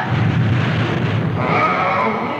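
Cartoon sound effect of a giant's foot stamping down: a heavy crash and low rumble as the ground shakes and rocks scatter, dying away after about a second and a half.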